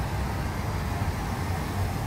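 Steady low rumble of road traffic in the background, with no distinct events.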